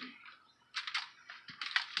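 Aluminium foil crinkling and rustling under gloved hands rubbing mustard over a pork butt: a loose string of light crackles and clicks starting just under a second in.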